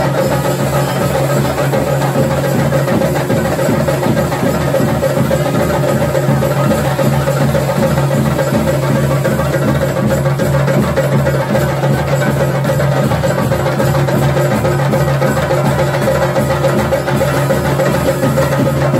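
A group of chenda drums beaten with sticks in a fast, continuous rhythm that runs without a break.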